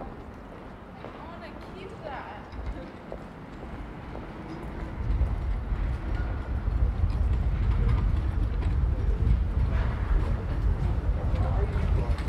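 Wind buffeting the microphone: a loud low rumble that sets in about five seconds in and stays, over passers-by talking.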